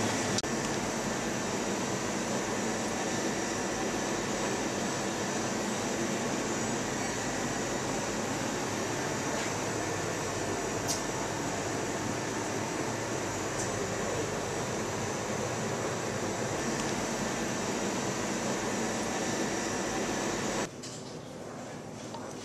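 Steady room noise like an air-conditioning or ventilation hum and hiss, which drops to a quieter level near the end.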